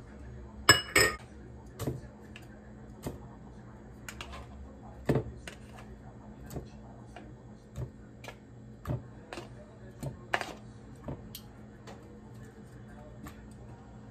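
Metal kitchen tongs clicking and roasted tomatillos knocking into a plastic blender cup, a scattered series of short clinks and soft thuds. Two sharper metallic clinks with a brief ring come about a second in.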